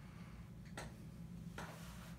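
Quiet room with a steady low hum, broken by one faint click a little under a second in and a short soft hiss near the end.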